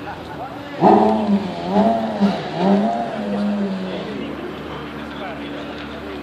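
A person's voice calling out loudly for about two seconds, over steady background noise, followed by a steady hum.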